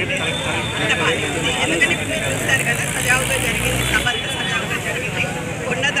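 A woman speaking Telugu into reporters' microphones. A low rumble runs under her voice for a couple of seconds midway.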